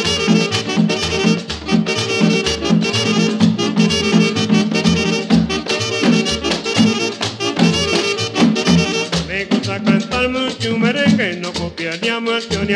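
Instrumental break in a merengue recording: horns playing over a repeating bass line, with tambora and güira keeping a fast, even beat.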